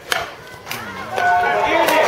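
Metal bat striking a pitched ball with a single sharp crack right at the start, followed by parents and spectators shouting and cheering, louder toward the end.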